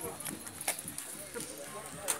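Sandal footsteps on cobblestone paving: sharp clicks every half second or so, under a steady murmur of people's voices.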